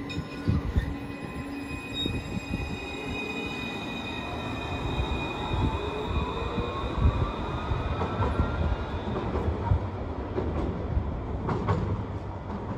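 Alstom Citadis tram pulling away, its electric traction motors whining in a steadily rising pitch as it gathers speed, over a low rumble from the wheels on the rails.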